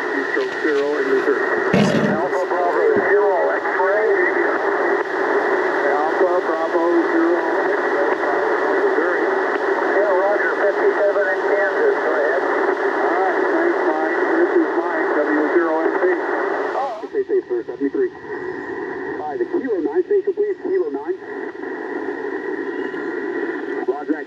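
Single-sideband voice signals on the 20-metre band from an Icom IC-705 transceiver's speaker, thin and cut off above about 2 kHz, with several voices overlapping. About 17 seconds in, the signal drops to a weaker, noisier voice.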